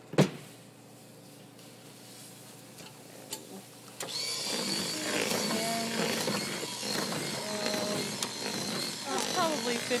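A sharp knock just after the start, then about four seconds in an electric hand mixer switches on and runs with a steady high whine and hiss, beating ice cream mix into which liquid nitrogen has been poured.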